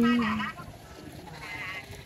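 The end of a woman's sung phrase in Thái folk singing: one held note that dips slightly in pitch and stops about half a second in, followed by a short quiet pause between verses.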